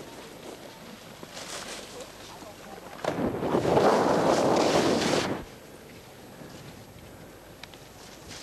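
Skis scraping and skidding across snow: a harsh hiss that starts abruptly about three seconds in, lasts about two seconds and then fades, over faint outdoor background.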